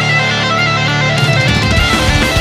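Skate-punk band recording: guitars carry the music on their own for about a second and a half, with the drum hits dropped out. The drums come back in near the end.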